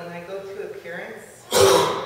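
A person's single loud cough about one and a half seconds in, sudden and dying away within half a second, after some faint talk.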